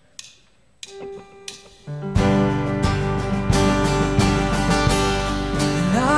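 Live worship band starting a song: a few soft sustained guitar and keyboard notes, then about two seconds in the full band comes in with strummed acoustic guitar, bass and drums, playing the lead-in to a sung chorus.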